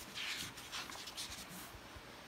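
A paper page of a picture book being turned by hand: a faint rustle and slide of paper during the first second or so.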